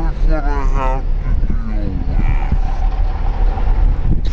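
A woman's voice talking in short phrases over a steady low rumble.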